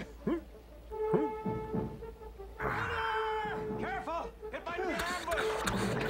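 Film soundtrack: a man's short grunts and cries of effort over background music that holds a steady note, with a brief burst of noise about three seconds in.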